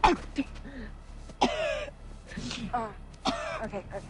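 A young woman coughing and clearing her throat in a series of harsh, choked vocal sounds, struggling for breath.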